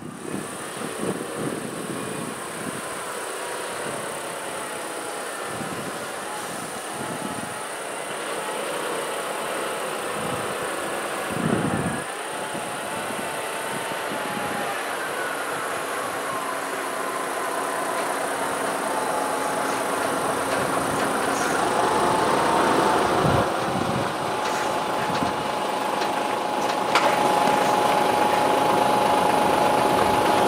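Heavy diesel tractor unit pulling a low-loader trailer, its engine running and growing steadily louder as it approaches and draws up close. A steady whine comes in over the last few seconds, with a couple of dull thumps along the way.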